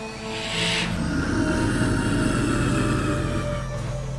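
Tense, ominous soundtrack music, with a sharp hissing burst about half a second in, then a rumbling sound effect, louder than the music, as a cartoon alien ship powers up and lifts off amid smoke.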